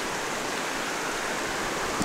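Steady, even rushing background noise with no distinct events.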